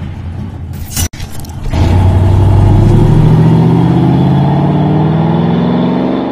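Car engine sound effect: a sharp click about a second in, then the engine runs and revs up, its pitch rising steadily for about four seconds.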